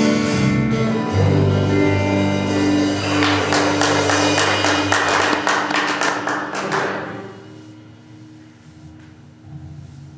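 Live rock band with electric guitars, bass and drum kit playing the end of a song. It closes with a rapid run of drum and cymbal hits, then the held chords ring out and fade from about seven seconds in.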